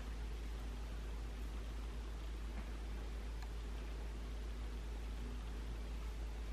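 Steady low hum and hiss of room noise, with a few faint rustles of fingers working through short hair.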